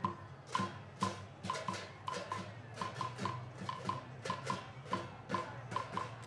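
Korean pungmul percussion music for the bara chum cymbal dance: a quick, steady rhythm of struck metal pings and drum beats, with the ringing clashes of brass hand cymbals (bara).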